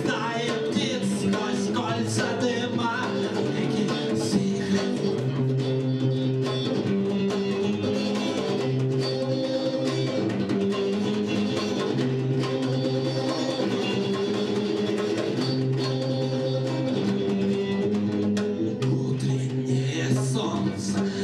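A live band playing: electric guitar over held low notes, with steady hand-drum strokes. A voice is heard in the first few seconds, then the passage goes on without it.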